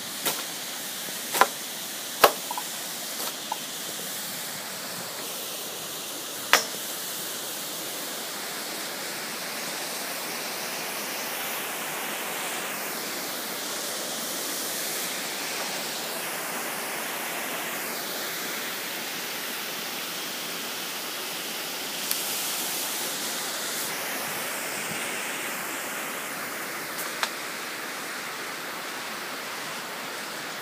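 Steady rush of river water flowing over a rocky bed, with a few short sharp clicks in the first seven seconds and once more about two-thirds of the way through.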